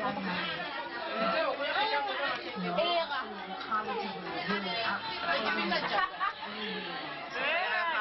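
Overlapping chatter of several people talking at once in a room.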